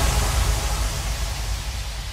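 End of a hardstyle track: a wash of white noise over a low rumble, fading steadily with no notes or beat left.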